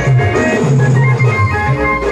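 Live band music: an electronic keyboard playing an organ-voiced melody and chords over a shifting bass line, with drums.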